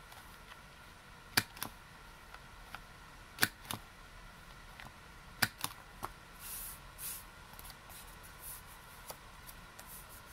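Handheld corner-rounder punch snapping through a postcard and cardstock three times, about two seconds apart, each loud snap followed by a softer second click; each snap rounds off one corner. Paper rustles briefly after the third.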